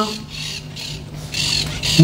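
A man's voice amplified through a microphone and loudspeaker: a phrase ends just at the start, then a pause with only a faint steady hum and a short hiss before his next phrase begins at the very end.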